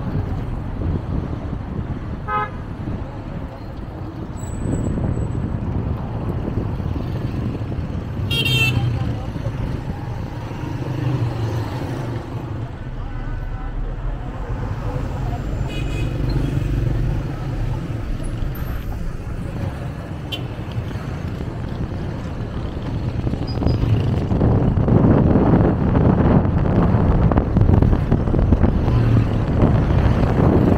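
Town street traffic heard from a moving car: steady road and engine rumble, with three short horn toots from passing vehicles, the loudest about eight seconds in. The rumble swells louder in the last few seconds as the car picks up speed.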